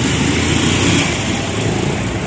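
Road traffic noise with a bus driving past close alongside, a steady engine-and-road rumble that eases a little after about a second.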